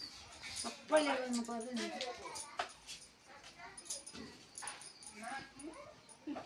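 A dog whimpering and yipping in a string of short whines, with voices in the room.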